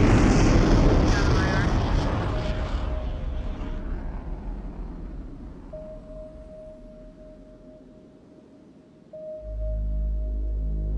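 Sound-design engine rumble of a heavy sci-fi transport shuttle flying overhead, loud and deep at first, then fading away over about eight seconds. A thin steady tone rises under it, and a low synth drone from the score comes in near the end.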